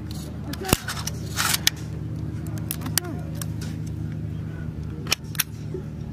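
Scattered sharp clicks and snaps of rifles being handled during dry-fire practice, over a steady low hum.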